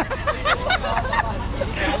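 Several people talking and calling out at once over a steady low rumble of a vehicle engine.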